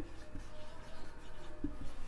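A marker writing on a whiteboard: faint, short scratching strokes as words are written by hand, with a small tap near the end.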